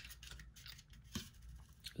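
Soft, close-miked clicks and light taps from a small plastic LED nail lamp being handled, with a firmer knock about a second in as it is set down on a towel.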